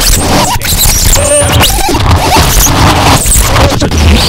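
Noise music: a loud, dense wall of scraping and scratching sound, broken by a few short squeals and sharp clicks.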